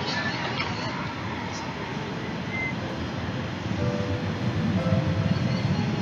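Steady rumbling background noise, joined about four seconds in by a few held musical notes as the intro of a live performance recording begins playing.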